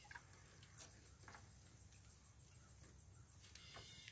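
Near silence: faint outdoor background with a few soft, scattered ticks.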